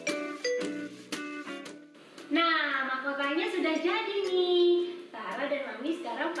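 A short jingle of quick struck notes on a xylophone-like mallet instrument ends about two seconds in. Then voices take over, speaking with high, swooping pitch.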